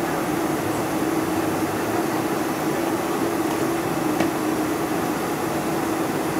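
Boeing 747-400's GE CF6 turbofans running at low taxi power, heard inside the cabin: a steady rush with a constant hum and no spool-up yet. A faint tick about four seconds in.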